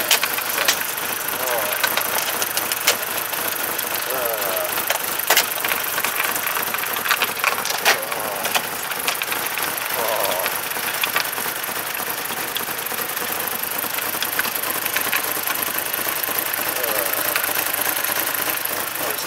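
BMW 318's four-cylinder engine running with a steady hiss and many sharp spattering clicks as it spits out milky water-and-oil froth, a sign of pressure built up inside the water-filled engine.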